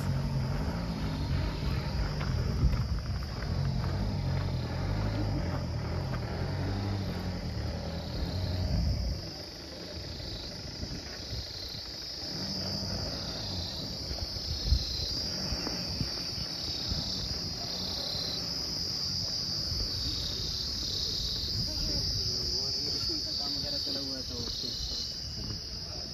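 A chorus of insects calling, a high steady buzz that swells and dips about once a second. Under it, a low rumble fades out about nine seconds in.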